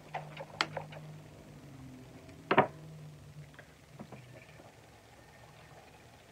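Small battery-powered toy makeup-brush and beauty-blender washing machine running with a brush held in its spinner: a low steady hum that stops about four and a half seconds in, with a few light clicks and a short sharp sound about two and a half seconds in.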